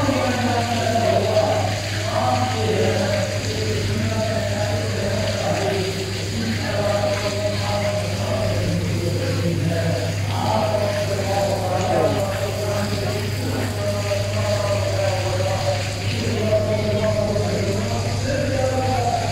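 A man's voice reciting in a chanting style, with long-held, wavering notes, over a steady low hum.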